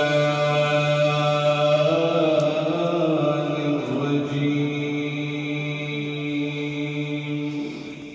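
A man's voice chanting long, drawn-out notes through a microphone and loudspeakers, as in devotional Islamic recitation. The pitch bends a little mid-way, and the voice fades out near the end.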